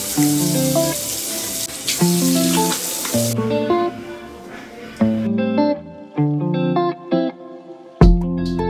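Background music of short plucked, guitar-like notes. For about the first three seconds, a hiss of running tap water plays under it, then stops, leaving the music alone.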